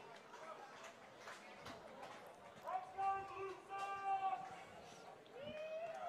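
Faint ballpark ambience with a distant voice shouting: one long held call about three seconds in, and a shorter call that rises and falls near the end. A few faint clicks are scattered through it.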